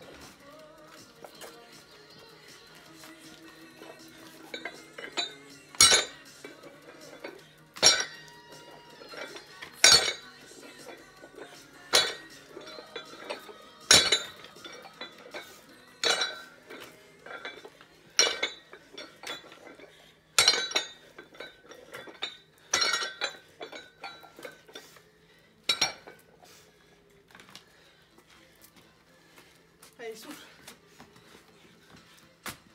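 A plate-loaded dumbbell set down on the ground once per rep, its metal plates clanking: about ten sharp clanks, roughly one every two seconds, starting a few seconds in and stopping a few seconds before the end. Faint music plays underneath.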